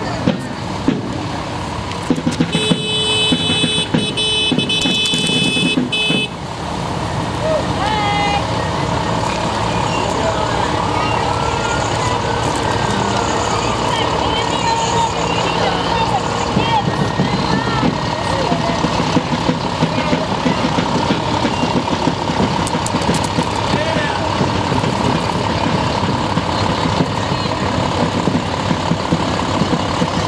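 Parade vehicles driving slowly past with engines running. A horn sounds a couple of seconds in and is held for about three and a half seconds. Steady background chatter from spectators runs throughout.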